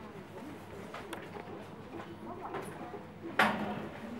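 Shop background of faint voices, with one sudden loud bump about three and a half seconds in, the sound of the phone being knocked against goods on the rack.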